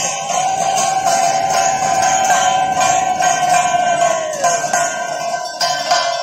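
A conch shell blown in one long, steady note that droops in pitch and dies away about four and a half seconds in, over the continuous jangle of bells and cymbals of a Hindu aarti.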